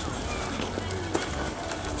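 Outdoor park ambience: a steady low rumble and faint distant voices, with the footsteps and handling noise of someone walking with a handheld camera.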